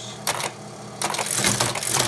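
Teletype Model 15 clattering as characters are keyed and printed: a short clack about a quarter second in, then a run of rapid mechanical clatter from about a second in.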